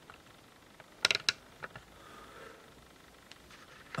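A quick cluster of three or four sharp clicks about a second in, handling noise from a camera being moved and repositioned, followed by a faint brief rustle over quiet room tone.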